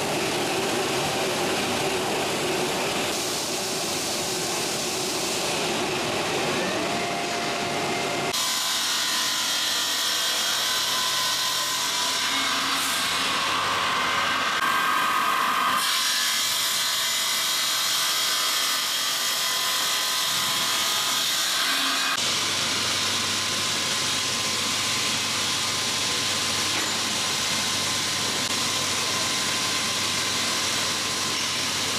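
Marble-processing machinery running wet: a multi-head slab polishing line, circular saw blades cutting marble slabs under water spray, and a grinding head working a marble block. The steady machine noise changes abruptly several times, every six to eight seconds.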